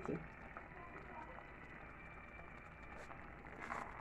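Faint, steady simmering of a pot of pasta in tomato sauce on a low gas flame, with a few light crackles.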